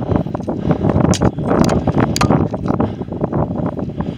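Wind buffeting the camera microphone as it moves along a dirt forest trail, a dense low rumble broken by irregular knocks and bumps from the rough ground.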